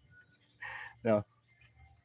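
Faint, steady chirring of night insects in a lull between speech, with a brief soft noise just over half a second in.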